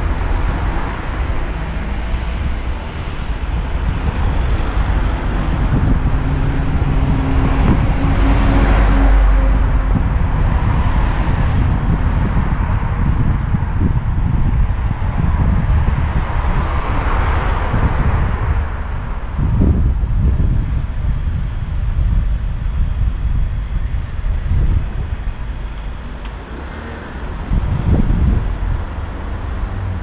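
Town street traffic noise with wind rumbling on the microphone, a steady low roar that swells louder twice, about eight and seventeen seconds in.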